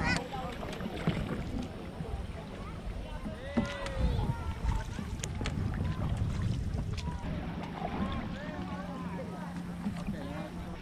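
Canoe paddling on a river: paddle strokes and water against the hull under a low wind rumble on the microphone, with indistinct voices calling now and then, one clear call about three and a half seconds in.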